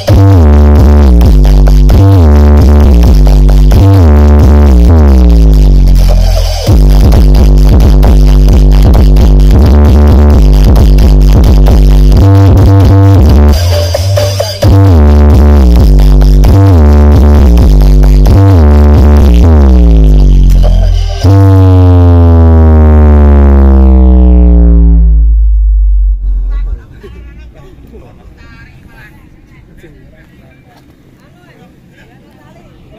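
Bass-heavy electronic dance music played at very high volume through a wall of Betavo triple-magnet 21- and 18-inch subwoofers, with repeated falling bass sweeps. About 21 s in, a long falling sweep runs down, and the music stops about 27 s in, leaving a much quieter outdoor background.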